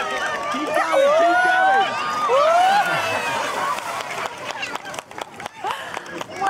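Loud laughter and shrieking with long rising-and-falling cries as a woman falls off a paddleboard into the sea, then splashing water and a run of sharp knocks and clatters in the last two seconds.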